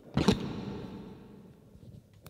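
A short, sudden sound picked up by a handheld karaoke microphone set with an echo effect. It is loud at the start, then rings out and fades over about a second and a half.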